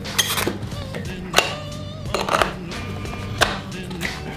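Background music with a steady low bass line and a sharp knock about once a second.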